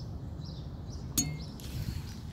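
Faint bird chirps over a low steady rumble, with one sharp click a little over a second in.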